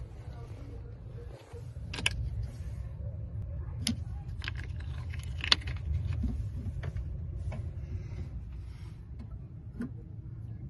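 Sharp clicks and knocks from plastic terminal covers and cables in a vehicle battery box being handled, the loudest about halfway through, over a steady low rumble.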